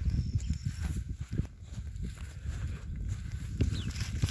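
Wind buffeting the microphone, a gusty low rumble that rises and falls, with a few light knocks from handling.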